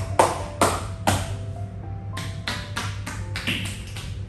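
Percussive massage strikes from hands on a person's head and shoulders: a few sharp slaps in the first second, then a quicker run of them from about two and a half seconds in, over background music.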